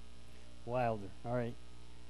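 Steady low electrical mains hum on the recording. A voice speaks two short syllables just under a second in.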